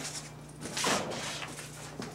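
Black fabric cover rustling as it is handled and pulled over a lamp frame, with one louder swish about a second in.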